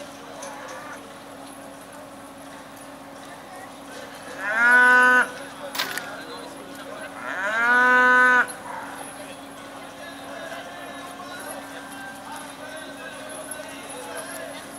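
Cattle mooing twice, two loud calls of about a second each, a few seconds apart, each rising at the start and then held. A single sharp click falls between them.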